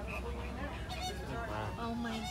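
Low, steady hum of the stopped safari truck's engine idling, under the scattered voices of passengers, with one loud, high-pitched call about halfway through.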